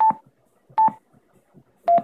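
Yaesu DR-1X repeater's touchscreen key beeps, three short electronic beeps as on-screen buttons are tapped to cycle the TX squelch setting. The first two are at the same pitch, and the last, near the end, is a little lower.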